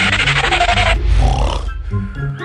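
Cartoon background music with a loud, noisy cartoon sound effect lasting about a second at the start, then a shorter hissing one about a second and a half in.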